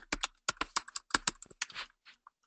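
Typing on a computer keyboard: a quick run of about a dozen key clicks, roughly six a second, stopping just before the end.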